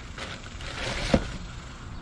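Rustling handling noise that builds towards the middle, with one sharp click just past the middle.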